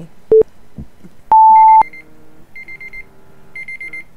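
Countdown timer sound effect reaching zero: a short beep, then a long, louder, higher beep about a second later. After it come three groups of rapid high-pitched alarm-clock beeps, about a second apart.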